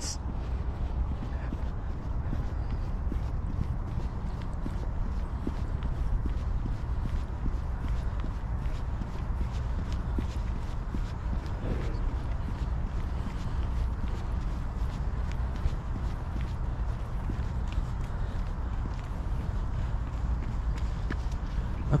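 Running footsteps on a paved path in a steady rhythm of footfalls, over a steady low rumble of wind on the microphone.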